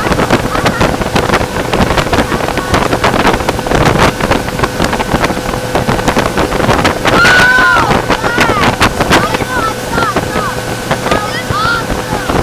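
Motorboat running at speed, its engine giving a steady hum under the rush of the wake and heavy wind buffeting on the microphone. A voice calls out loudly about seven seconds in, followed by several shorter cries.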